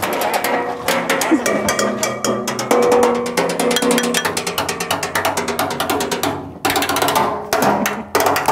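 Percussion-heavy music: a dense run of rapid struck hits over a few sustained tones, with a short break about two-thirds of the way through.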